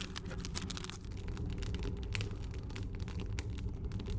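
Wood-fired rocket stove burning hard at full heat, around 2000 degrees: a steady low rumble of the draft with many small, quick crackles from the burning sticks.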